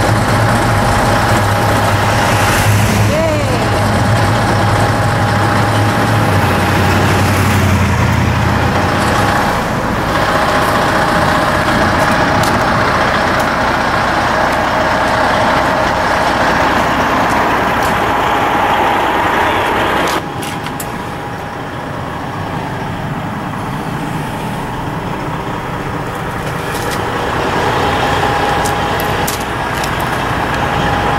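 Semi-truck tractor's diesel engine idling steadily at the kerb, with a deeper engine rumble underneath for the first nine seconds or so. The overall level drops suddenly about twenty seconds in.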